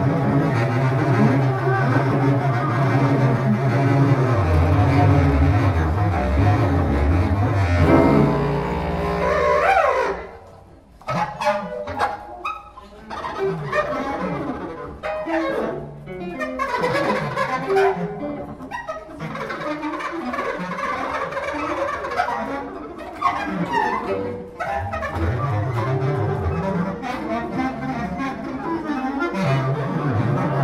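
Free improvisation by bass clarinet, cello and guitar: dense, low sustained notes with a rising glide about eight seconds in, then a sudden drop to sparser, short scattered notes that thicken again near the end.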